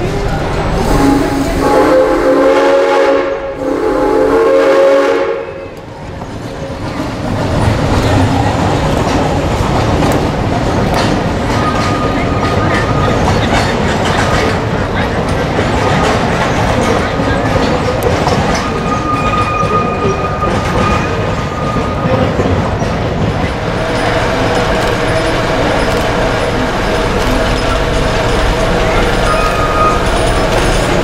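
Narrow-gauge steam train of the Frisco Silver Dollar Line: the locomotive's whistle sounds two long chord blasts about a second in, then the passenger coaches roll past with steady wheel clatter and occasional thin wheel squeals.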